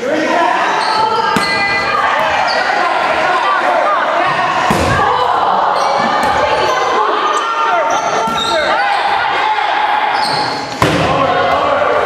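Rubber dodgeballs thudding as they are thrown, strike and bounce on a hard gym floor, with a sharp loud hit near the end, over players' voices calling out, all echoing in a large hall.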